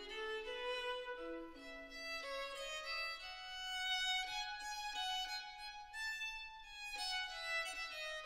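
Solo violin playing a slow melody, its notes climbing to a long held note in the middle and then stepping back down.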